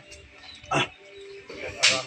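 A dog barking twice in short sharp barks, the second louder and near the end.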